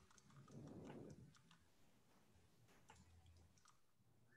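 Near silence with faint scattered clicks, like keys or a mouse, and a soft low rustle from about half a second to a second in.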